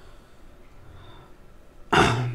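A pause of low room noise, then a man's single sharp cough right at the end.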